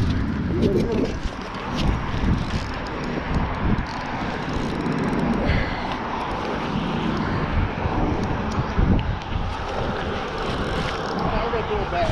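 Wind buffeting the microphone, an uneven low rumble over a steady hiss, with traffic noise from the adjacent highway bridge. A brief faint voice comes in just after the start.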